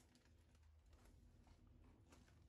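Near silence: faint, scattered light ticks and crinkles of cellophane bouquet wrapping as the wrapped bouquets are held and shifted.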